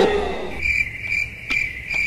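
Cricket chirping: about four short, high chirps spaced roughly half a second apart.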